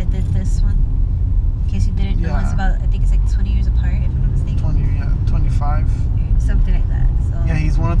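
Steady low rumble of road and engine noise inside a car's cabin while it is being driven, with talking on top now and then.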